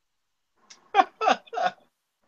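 A person laughing: a short run of three falling 'ha' sounds about a second in.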